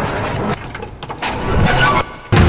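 Edited title-card sound effects: the tail of a dramatic intro music sting, then a whoosh that builds up over the second half and cuts off sharply at the end.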